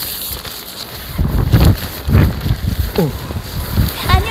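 Wind buffeting the microphone in low, gusty rumbles. A man gives a short startled cry, falling in pitch, near the end.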